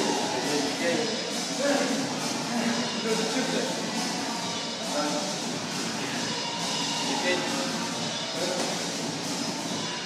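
Plate-loaded push sled scraping and rolling across a gym floor in a steady rumble, with background music and voices underneath.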